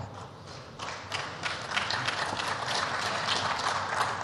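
Applause from the assembled members of parliament: many hands clapping, starting about a second in and growing louder.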